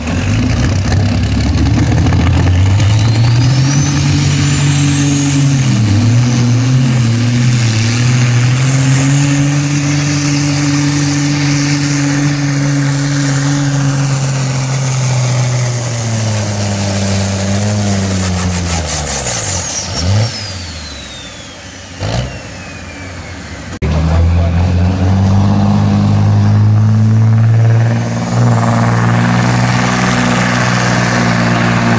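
Heavy diesel truck engine under full load pulling a weight-transfer sled, with a high turbo whistle climbing over it. The engine note wavers briefly, then the revs and the whistle wind down together as the pull ends. After a sudden change, a second diesel truck is heard revving hard, its whistle rising again near the end.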